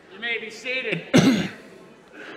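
A person's voice makes a few brief sounds, then clears their throat loudly and harshly about a second in.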